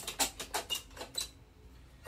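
Manual caulk gun being squeezed, its trigger and plunger rod giving a string of quick, irregular clicks that thin out in the second half, as it pushes epoxy from the crack-injection cartridge through the hose into a wall port.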